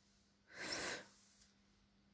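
A woman's single faint breath, about half a second long, near the middle.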